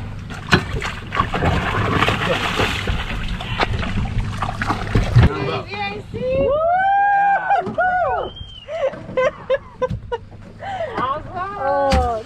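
A yellowfin tuna thrashing and splashing at the side of a small boat as it is gaffed and hauled aboard, with knocks against the hull and a loud thud about five seconds in. Loud drawn-out voices follow in the second half.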